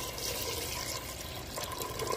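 Cold tap water pouring in a steady stream into a metal pot of raw meat pieces, splashing as the pot fills.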